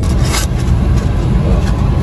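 Car cabin noise: a low, steady rumble with no voices.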